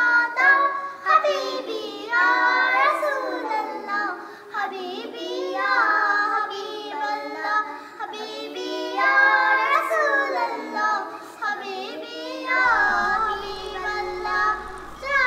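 A group of young girls singing a Bengali gojol (Islamic devotional song) together, in long phrases with wavering held notes.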